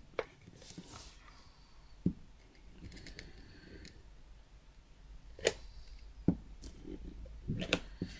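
A Stampin' Seal Plus adhesive tape runner rolled along the back of a cardstock panel: faint rasping strokes, with a few sharp clicks and taps in between.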